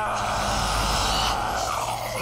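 Cartoon monster giving one long, raspy roar over a low rumble, cutting off just before the end.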